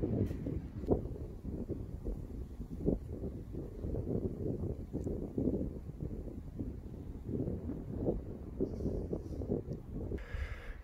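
Wind on the microphone: an uneven low rumble that swells and drops in gusts.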